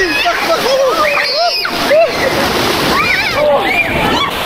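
Rushing, churning water of a wild-water slide channel splashing over the camera, with people shrieking and shouting over it in short rising and falling cries.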